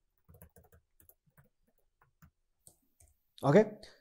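Faint typing on a computer keyboard: a scattered run of light key clicks that stops about three seconds in.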